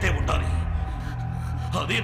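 Tense film background score holding a low, steady drone, with a man's voice briefly at the start and a short spoken word near the end.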